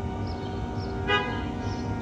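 A short car horn toot about a second in, the loudest sound here, over steady ambient background music.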